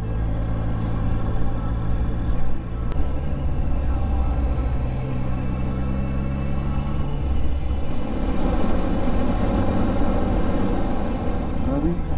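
Triumph Speed Triple 1050's three-cylinder engine running at a steady cruise through an Arrow exhaust, with wind noise from riding. The engine note shifts to a new steady pitch a few times.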